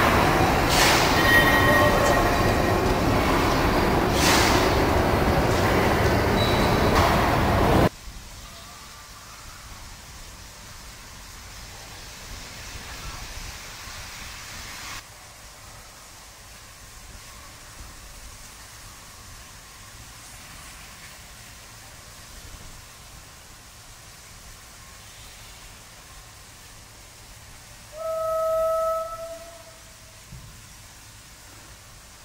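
Loud steady steam hiss from a QJ-class steam locomotive in the depot shed, which cuts off suddenly after about eight seconds to quiet yard ambience. Near the end comes one short, single-pitched steam whistle blast lasting about a second.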